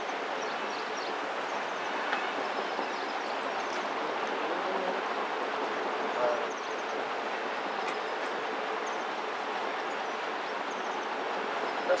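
Steady outdoor background noise, an even hiss with no distinct events, with faint distant voices now and then.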